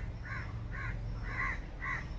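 A bird calling over and over in short, evenly spaced calls, about two a second.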